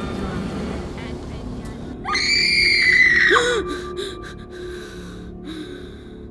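A woman's high-pitched scream, held for about a second and a half starting about two seconds in, over a low dark drone of horror-trailer sound design. The drone fades lower after the scream, broken by a few brief clicks.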